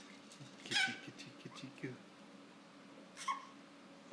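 A baby's brief high-pitched squeals: a louder one about a second in and a shorter, fainter one near the end. Faint low knocks come in between during the first two seconds.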